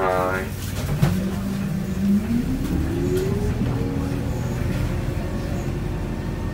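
Isuzu Erga city bus's four-cylinder diesel pulling away from a stop, heard from inside the cabin: its note rises steadily for a couple of seconds as the bus accelerates, then settles into steady running.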